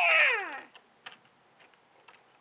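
A person's voice giving one short high cry that slides steeply down in pitch over about half a second, followed by a couple of faint clicks.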